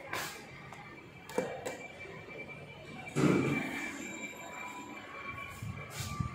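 LG passenger lift answering a hall call: a sharp click about one and a half seconds in, then, about three seconds in, a louder noisy stretch of under a second as the lift's doors slide open.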